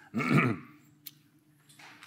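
A short vocal sound of about half a second near the start, its pitch bending downward, followed by a single faint click about a second in.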